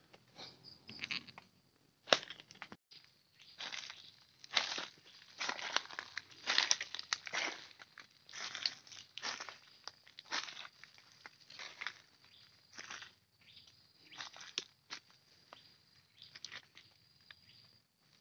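Footsteps crunching through dry fallen leaves, an irregular step or two a second. A single sharp crack about two seconds in is the loudest sound.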